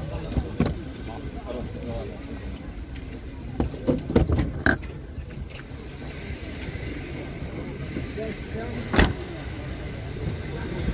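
Car trunk lid shut with a single loud thud near the end, after a few knocks and clicks about four seconds in, over a steady murmur of background voices.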